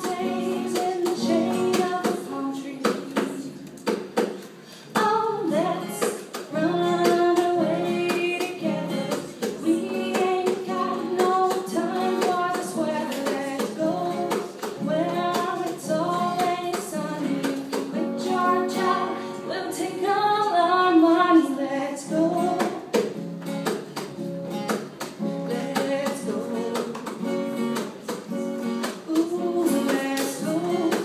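Live acoustic guitar strummed as accompaniment to a singing voice, a song carrying on throughout.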